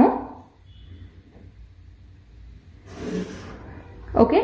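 A pen drawing a line along a ruler on pattern paper: one scratchy stroke of about a second, about three seconds in.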